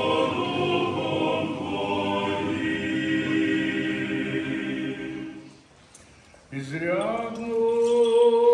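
Orthodox church choir singing unaccompanied, a full chord of held voices that ends about five and a half seconds in. After a brief pause a single man's voice slides up and holds one intoned note.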